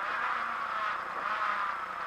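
Renault Clio A7 rally car driven at speed on a stage: its engine and road noise heard from inside the cabin.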